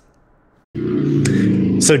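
A moment of near silence, then a man's voice starts abruptly with a held, steady-pitched hesitation sound for about a second before he begins speaking with "So".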